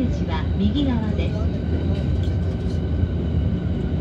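Steady low rumble of a train running, heard from inside a double-decker Green car.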